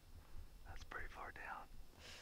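A person whispering briefly, about a second of hushed, unvoiced speech near the middle.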